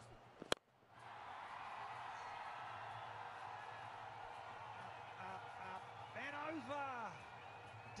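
Cricket bat striking the ball: one sharp crack about half a second in, a lofted hit that carries for six. It is followed by a steady wash of stadium crowd noise.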